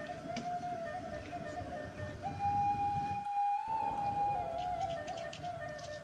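Soft background music: a flute-like melody of long held notes, stepping up in pitch about two seconds in and back down near the end.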